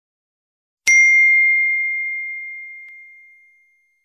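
A single notification-bell ding sound effect, struck once about a second in and ringing as a clear high tone that fades away over about three seconds.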